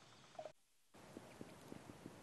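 Near silence: faint background hiss in a pause between speakers, with the sound dropping out to dead silence for under half a second about halfway through.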